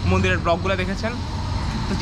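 A man talking in Bengali for about the first second, then a short pause, over a steady low rumble of road traffic.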